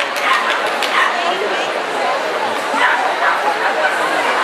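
A small dog barking in short, high-pitched yaps again and again while it runs an agility course, over a background of crowd voices in a large hall.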